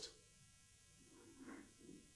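Near silence in a pause between spoken sentences, with a faint, brief sound about a second and a half in.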